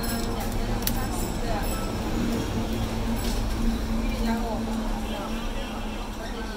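Background voices talking over a steady hum, with a few small sharp clicks, the clearest about a second in.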